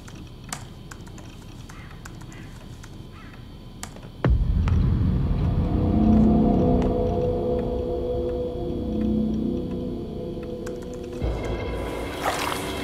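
Laptop keyboard being typed on, with sparse, uneven key clicks over a quiet background. About four seconds in, a sudden deep boom sets off louder music with held tones that runs on.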